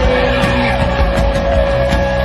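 Live rock band playing loud distorted electric guitars and drums, with one held guitar note ringing steadily throughout.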